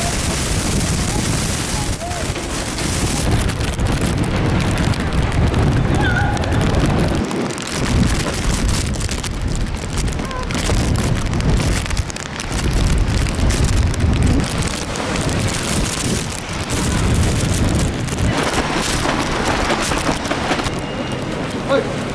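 Strong storm wind gusting against the microphone in a loud, rising and falling rumble, with heavy rain falling on the pavement. The gusts drop away briefly twice.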